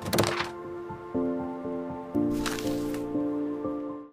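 Short logo-intro jingle: held musical chords that step to new notes twice, with brief noisy swishes near the start and again about halfway through, cutting off at the end.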